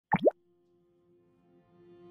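A quick swooping 'bloop' sound effect right at the start, dropping then rising in pitch, followed by a quiet held note as intro music slowly fades in.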